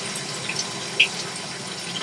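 Shower water spraying steadily behind a closed curtain, with one brief short sound about halfway through.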